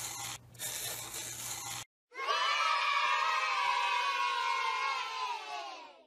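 A pen scratching across paper in two quick strokes, with a brief break between them. About two seconds in, a group of children starts cheering, a long drawn-out shout that dies away near the end.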